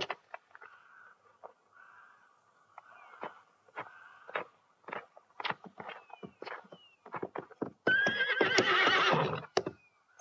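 A horse whinnying once, loudly, for about a second and a half near the end. Scattered sharp knocks and thuds run before it.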